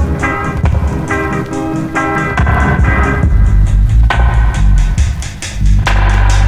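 Instrumental 1970s Jamaican reggae dub: short, repeated organ chord stabs about twice a second over a bass line and drums. About halfway the heavy bass comes to the fore and the organ thins out.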